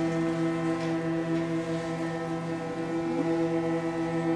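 Student string orchestra holding one long sustained chord, the bowed notes steady throughout.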